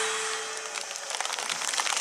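The last held note of the dance music fades out, then scattered clapping from the crowd, growing toward the end.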